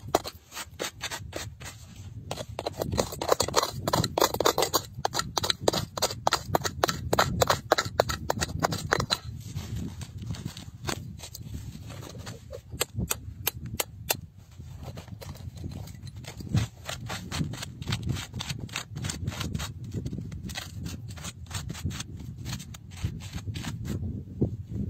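A metal hand tool picking and scraping at packed dirt and stone: a fast run of sharp clicking taps with gritty scraping between them. The taps are densest in the first several seconds and come again in a short cluster about halfway through.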